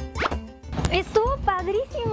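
Background music from the programme's edit, with a quick upward-sliding sound effect about a quarter of a second in, then voices over the music for the rest of the moment.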